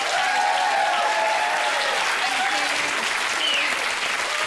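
Studio audience applauding, a steady clapping all through, with a few voices rising over it in the first two seconds.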